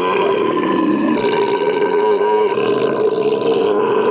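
A man's loud, long scream into a microphone, held on one steady pitch.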